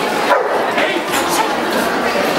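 A dog barking, loudest about a third of a second in, over crowd chatter.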